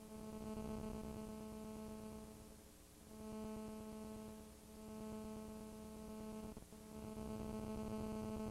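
A steady low-pitched hum with a row of overtones, swelling and fading in slow waves, with a brief break about two-thirds of the way through.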